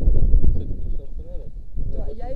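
Wind buffeting the camera's microphone, a low rumble loudest in the first half second, with faint voices in the background.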